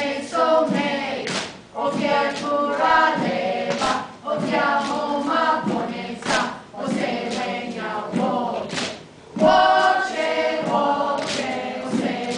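A group of children and adults singing together, punctuated by sharp strikes of open palms on hand-held dried gourds. The strikes land every second or two, and the singing drops briefly and comes back louder about nine seconds in.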